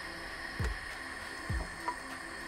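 Plastic strainer lid of a shut-off Hayward Super Pump being twisted loose and lifted off, with two soft low thuds about a second apart.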